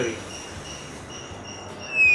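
Insects chirping in short, regularly repeated high pulses. Near the end a loud, high whistle sets in and slowly falls in pitch.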